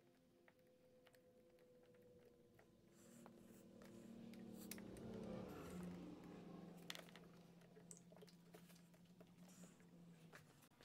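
Near silence with faint handling noises: a rubber spark plug cap and wire being worked onto the spark plug, with a few small clicks. A faint steady low hum sits underneath.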